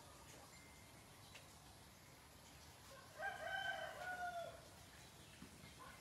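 A rooster crows once about three seconds in: a single drawn-out call lasting about a second and a half, with a short drop in pitch at the end, over faint background.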